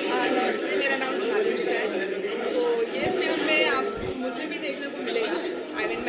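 Speech: several people talking at once, with overlapping chatter.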